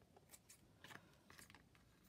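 A few faint snips of fabric scissors trimming loose threads from a fabric ruffle.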